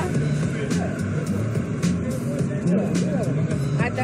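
City street ambience: steady traffic running, with low voices nearby.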